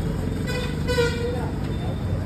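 A vehicle horn sounds once, a steady note lasting about a second, over the low rumble of road traffic.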